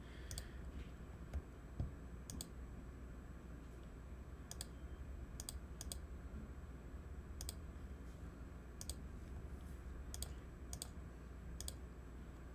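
Computer mouse clicking about ten times at an uneven pace, single sharp clicks a second or so apart, over a low steady room hum.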